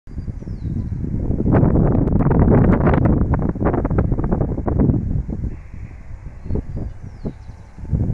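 Wind buffeting the microphone in gusts, a rough rumbling crackle that is strongest for the first few seconds and eases after about five seconds.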